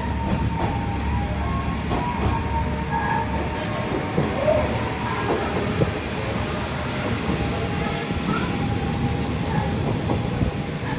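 A train running along the rails, heard from an open-air trolley car: a steady rumble of wheels on track with a few short rail clicks and a faint steady whine.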